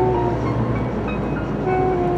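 Steady low rumble of a moving car heard from inside the cabin, under background music of long held notes that change about every half second.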